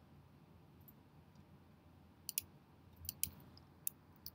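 A handful of faint, sharp computer mouse clicks in the second half, over low room hiss, as points are clicked in drawing software.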